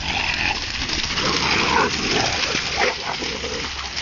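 A dog making irregular, breathy, noisy sounds, with no clear barks.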